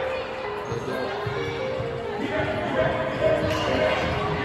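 A basketball bouncing on a hardwood gym floor during play, the thuds echoing in a large hall, with voices in the background.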